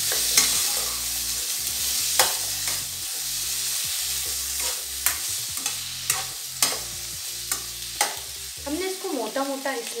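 Chopped onions, tomatoes and garlic sizzling in oil and butter in a kadhai, stirred with a spatula that scrapes the pan and knocks against it several times.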